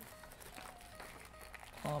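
Faint crinkling of a clear plastic bag as it is handled, over faint background music. A voice starts near the end.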